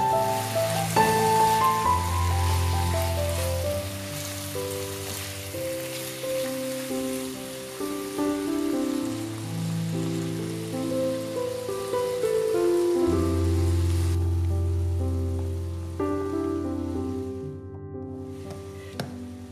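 Tomatoes and onions sizzling as they fry in a nonstick pan, under piano music. The sizzle drops away about 14 seconds in, leaving only the music.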